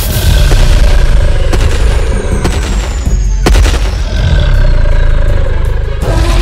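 Loud film sound effects: a heavy, deep rumble with a few sharp bangs about a second apart, and a thin high tone that falls slowly in pitch.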